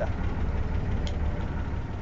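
The 1962 Mercedes-Benz 312's six-cylinder diesel engine idling steadily, a low rumble heard from inside the bus. A faint click about a second in.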